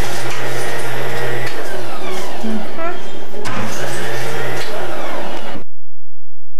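Indistinct voices over a steady hum and kitchen clatter, cutting off suddenly near the end.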